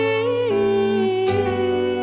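Live band music without lyrics: long held melody notes that slide down in pitch about half a second in, over a sustained low bass note, with a single cymbal-like stroke near the middle.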